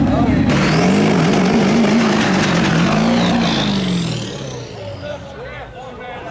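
Pickup truck's engine revving hard during a burnout, its pitch bouncing up and down, with a loud hiss of spinning tyres cutting in about half a second in. The engine and tyre noise die away over the last two seconds.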